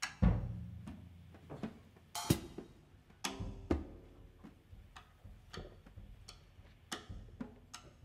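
Jazz drum kit played with sticks in irregular, spaced-out hits: bass drum and tom strokes that ring on, with several cymbal crashes left to ring.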